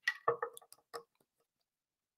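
Screw cap being twisted off a small glass sample bottle: a quick run of small clicks and creaks in the first second, then quiet.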